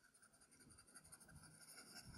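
Faint pencil scratching: a pencil rapidly shading in a bubble on a multiple-choice answer sheet with quick repeated strokes all in one direction.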